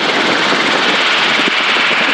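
Light helicopter in flight heard from inside the cockpit: a steady, even rushing noise from the engine, rotors and airflow, with no change in pitch or level.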